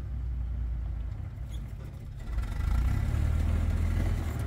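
1943 Willys MB jeep's engine pulling under load as it tries to climb out of a hole in a rock ledge, getting louder a little past halfway as more throttle is given.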